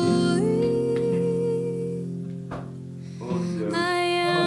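Background song: a sung voice holds long notes over instrumental backing, drops away about halfway through and comes back near the end.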